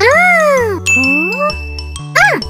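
Cartoon music with bass notes moving in steps. Over it, a pitched sliding tone rises and falls, then a second slide rises. A high bell-like ding comes in about halfway and is held.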